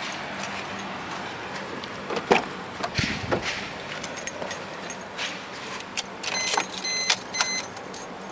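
A Suzuki car's driver door opens with a loud clunk, followed by knocks and rustles of someone climbing into the seat and keys jangling. Near the end come three short electronic beeps from the car's warning chime.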